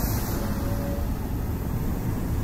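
Steady low rumbling outdoor background noise, with no distinct events.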